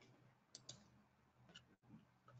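Near silence with a few faint clicks: two in quick succession about half a second in, and another near the end.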